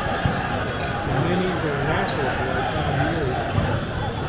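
Busy indoor volleyball-tournament din: balls being struck and bouncing on many courts, over a background chatter of many indistinct voices.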